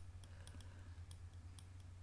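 Faint, rapid computer-mouse clicks, about five a second, as the healing tool is dabbed over smudges in the photo, over a steady low hum.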